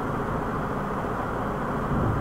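Steady background noise with no speech: an even hiss and rumble, mostly low, with no distinct events.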